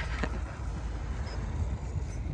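Steady low rumble of wind on the microphone with a faint even hiss above it. No distinct motor whine can be picked out.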